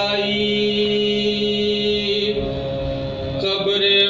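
A man's voice chanting soz, the melodic Urdu elegy for Karbala, holding a long, steady note. It breaks off a little past halfway and comes back in near the end.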